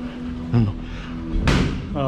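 Punches landing on a boxer's raised gloves as he blocks: a lighter knock about half a second in, then a sharp smack about one and a half seconds in.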